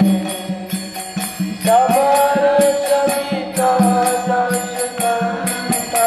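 Devotional chanting sung in long held notes that slide to a new pitch every couple of seconds, over a quick, steady metallic percussion beat.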